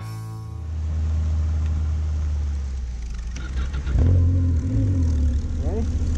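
Snowmobile engine running steadily, revving up about four seconds in. A singing voice begins near the end.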